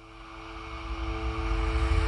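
Logo-animation sound effect: a low rumbling riser that swells steadily louder, with two steady held tones.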